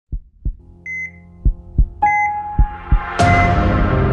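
Logo-intro sound design: three double heartbeat thumps about a second apart, with two pairs of short high monitor-style beeps between them. About three seconds in, a bright hit swells into sustained ambient synth music.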